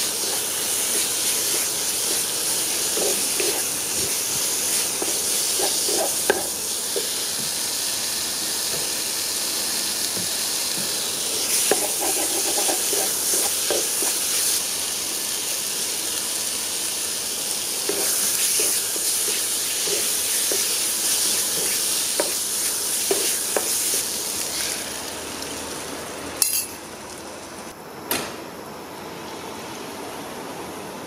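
Chicken pieces frying in curry paste in a non-stick pan, a steady sizzle, with a spatula scraping and knocking against the pan in short bouts of stirring. The sizzle drops off near the end, with two sharp knocks.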